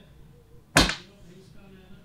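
A single short, sharp burst of noise about three-quarters of a second in, dying away quickly, over low room tone.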